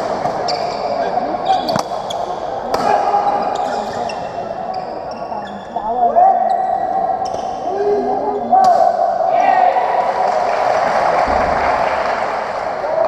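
A badminton doubles rally: players' court shoes give short, high squeaks on the floor, and rackets make sharp clicks striking the shuttlecock, the clearest about two seconds in and again near nine seconds. Spectators chatter steadily behind.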